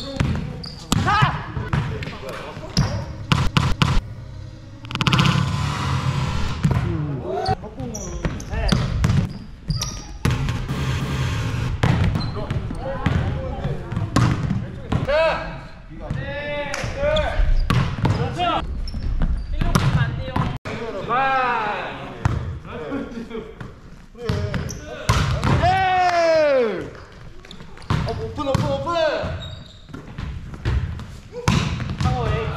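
Indoor volleyball rally sounds in a large gym: repeated sharp slaps of the ball being hit and striking the floor, mixed with players' shouted calls.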